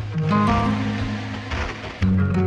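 Music: a song with a held deep bass note under short patterns of higher steady notes, the phrase starting again about every two seconds.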